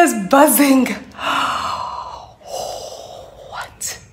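A woman's voiced cry falling in pitch, then breathy gasps and exhalations: her reaction to having just pierced her own earlobe with a piercing gun.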